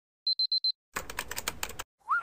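Sound effects on a title card: a digital alarm-clock beep in a quick group of four, then after a short silence a rapid patter of keyboard-typing clicks lasting about a second.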